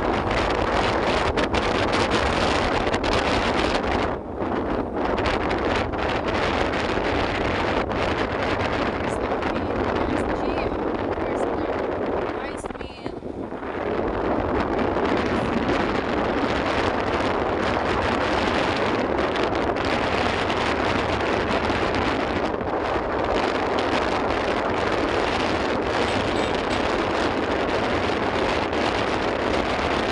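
Steady wind rushing over the microphone of a phone carried on a moving vehicle, with road and engine noise underneath. It dips briefly about halfway through.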